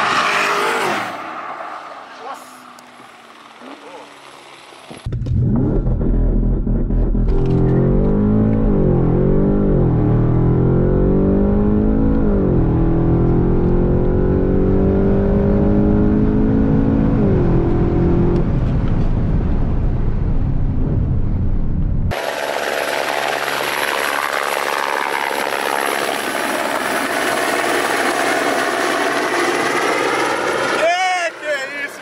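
Porsche Panamera Turbo S E-Hybrid's twin-turbo V8 heard from inside the cabin, accelerating hard at full throttle through a 100–200 km/h run. The engine note climbs and then drops at each of about three upshifts, a few seconds apart. A steadier, noisier sound follows near the end.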